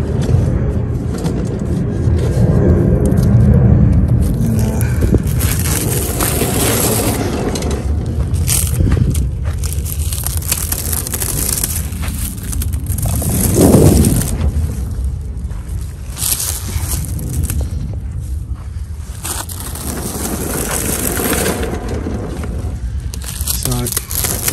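Clear plastic wrap on a drum of HFC cable being pulled and crinkled as the cable end is freed, with rustling handling noise over a steady low rumble.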